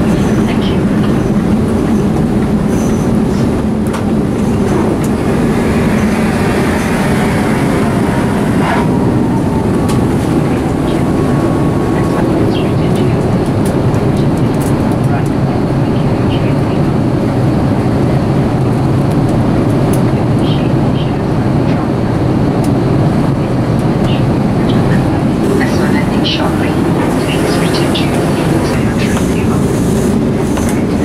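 Airbus A380 cabin noise in flight: a loud, steady low rumble of engines and airflow, with a few faint clicks here and there.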